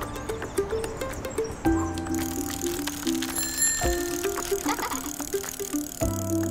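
Light background music with cartoon bicycle sound effects: fine ticking like a coasting freewheel and a bell ring about two seconds in.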